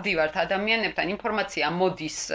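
A woman speaking in Georgian, talking continuously at an even conversational pace.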